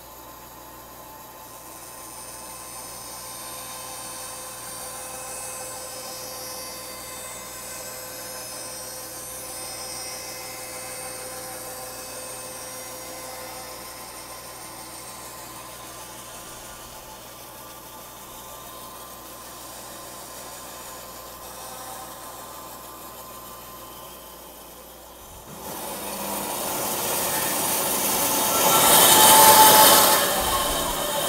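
Bandsaw running, its blade cutting through a board as it is fed by hand. Fairly quiet and steady at first, the cutting grows much louder over the last few seconds.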